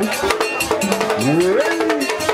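Vodou ceremony percussion: drums and a struck metal bell keeping a fast, even rhythm. About a second and a quarter in, a voice rises in one upward-gliding cry over it.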